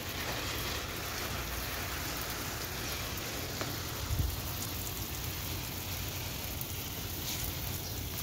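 Water spraying steadily from a garden hose spray nozzle onto a climbing plant's leaves, a wall and soil, a hiss like rain. There is a brief low bump about four seconds in.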